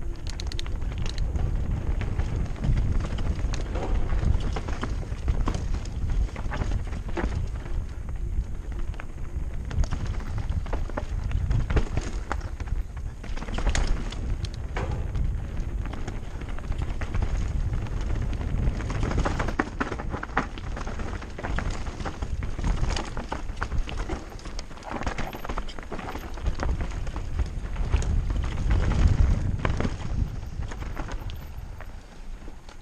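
Mountain bike descending a dirt and rock singletrack: tyres crunching over stones and the bike clattering and rattling over bumps, on a steady low rumble, loudest near the end.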